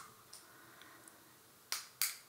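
A quiet pause in room tone, broken by one short sharp click near the end.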